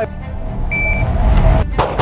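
A single short electronic shot-timer beep, about a third of the way in. Near the end come the first two sharp pistol shots of a rapid string, in quick succession.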